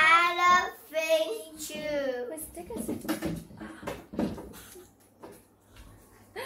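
A young girl chanting a rhyme aloud in a high, sing-song voice, the words unclear, then quieter indistinct voices trailing off over the second half.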